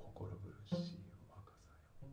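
Breathy whispered vocal sounds, with a sharp plucked string note about two-thirds of a second in that rings briefly, as part of an improvised performance.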